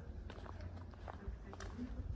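Faint footsteps, a few light steps over a low steady rumble.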